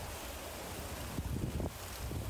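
Wind on the microphone: a steady low rumble, with a couple of faint knocks partway through.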